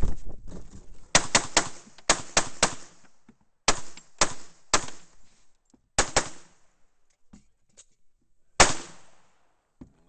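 Semi-automatic pistol fired in fast strings close to the microphone: a run of about seven shots in the first two seconds or so, then three, then a quick pair, and a single shot near the end, each with a brief echo.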